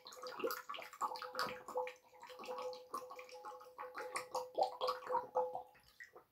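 Water running and splashing, with a steady faint hum beneath it; it stops abruptly near the end.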